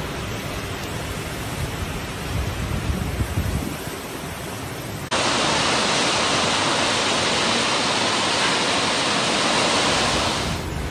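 Heavy rain and strong wind of a storm: a loud rushing noise with gusty low rumbling, which turns abruptly louder and steadier about five seconds in.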